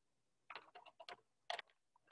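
A short run of faint clicks and taps, with one louder click about a second and a half in.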